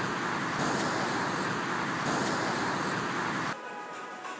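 Steady rushing noise of wind buffeting the microphone mixed with road traffic, cutting off suddenly about three and a half seconds in.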